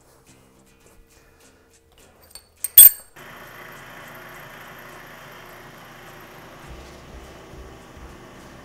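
A single sharp metallic clank about three seconds in, then a vertical milling machine's spindle running steadily with an end mill turning, a steady hum with a faint high whine.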